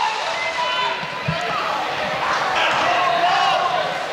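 Indistinct voices and murmur in a gymnasium, with a basketball thudding on the hardwood floor about a second in.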